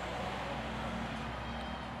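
Steady low background ambience of an open street-side terrace, a faint even hum and hiss with no distinct event.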